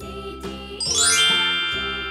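A bright chime glissando sweeps upward about a second in and leaves a cluster of high tones ringing, a scene-transition sound effect, over soft children's background music.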